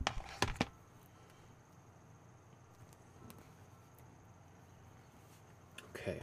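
Three sharp clicks in the first second, then a low steady room hum with a thin high whine and a few faint ticks.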